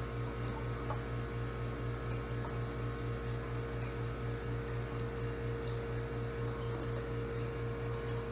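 Steady electrical machine hum, with a low throb pulsing evenly several times a second under a constant higher tone.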